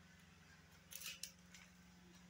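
Near silence: room tone with a steady low hum, and a few brief, faint scratchy noises about a second in.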